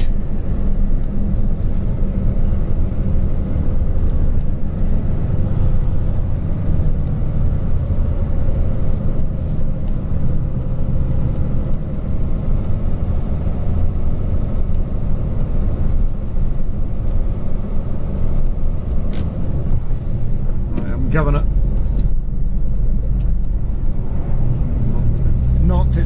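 Volvo FH16 750's 16-litre six-cylinder diesel running on the move, heard inside the cab as a steady low rumble mixed with road noise.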